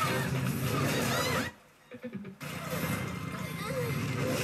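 Soundtrack of an animated action series: sound effects and music of a fight scene, dropping to near silence for about a second partway through before picking up again.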